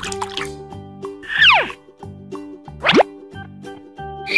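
Children's background music with a steady beat, overlaid with cartoon sound effects: a long falling swoop about a second and a half in, then a quick rising swoop around three seconds in.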